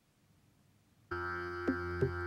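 Near silence, then background music starts suddenly about a second in: a sustained droning chord with a short note sounding over it.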